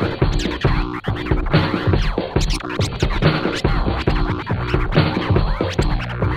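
Hip-hop DJ turntable scratching over a looping beat with a steady kick and bass, the scratches sliding up and down in quick strokes.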